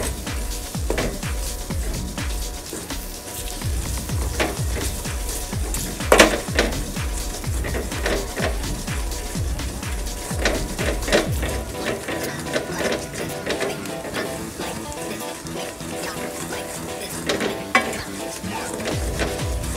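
A wooden spoon stirs, scrapes and knocks against a stainless steel pot while sugar sizzles as it melts into caramel. Background music plays throughout, and the sharpest knock comes about six seconds in.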